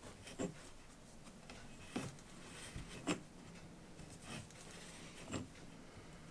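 Hooky mat hook poking through hessian and pulling fabric strips up on a wooden frame: about five faint clicks, roughly one a second.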